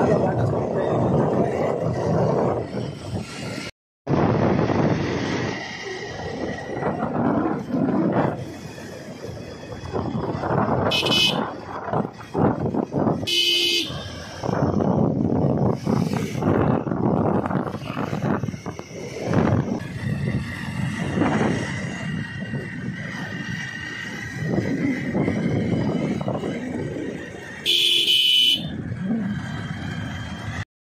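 Wind and road noise of a motorcycle ride, with a vehicle horn honking three times: two short toots a couple of seconds apart in the middle and a longer one near the end.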